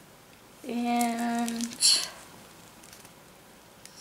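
A woman's voice holds one steady, unchanging note for about a second, like a drawn-out "mmm", followed right after by a short, sharp hiss, the loudest sound here.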